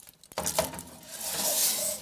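Metal clank about a third of a second in, then a foil-lined baking tray scraping as it slides onto the wire rack of an oven, growing louder toward the end.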